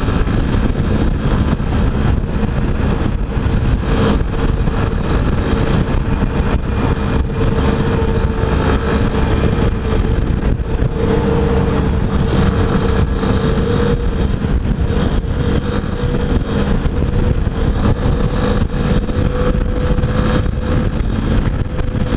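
Yamaha XTZ 250 Ténéré single-cylinder engine running at a steady highway cruise, its note holding one pitch, over heavy wind rumble on the microphone.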